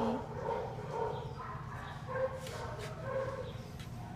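Young puppies whimpering: several short, high whines in a row.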